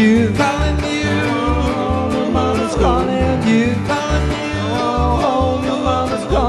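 Acoustic string band playing a song: upright bass notes about twice a second under strummed acoustic guitars and mandolin, with a voice singing.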